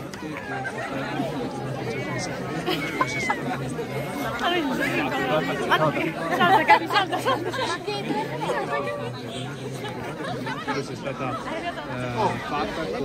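Crowd of teenage students chattering, many voices overlapping with no single speaker standing out, over a steady low hum.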